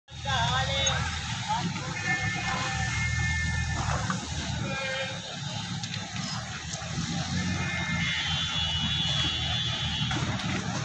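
Busy street ambience: a steady low vehicle rumble under voices, with a few held high tones that last about two seconds each.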